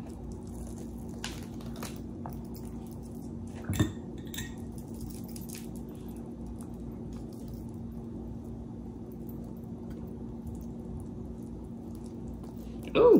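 Quiet handling of food on a plate as pickle slices are laid onto a sandwich: a soft knock about four seconds in and a few faint clicks, over a steady low hum.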